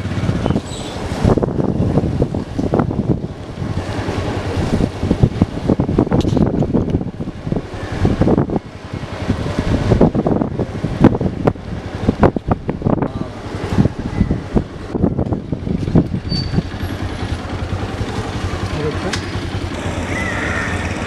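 A motor vehicle running as it moves along a road, with gusty wind buffeting the microphone over a steady low rumble; the buffeting eases into a steadier sound near the end.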